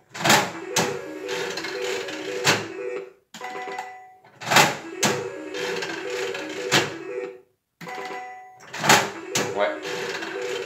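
A lever-operated three-reel slot machine is played three times, about four seconds apart. Each pull sets off a sharp clack, then the reels spin to a short electronic tune and stop with clunks.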